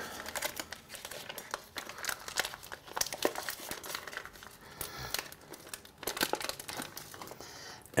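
Fish packaging crinkling and crackling as a halibut fillet is unwrapped by hand, a steady run of quick crackles with a few tearing sounds.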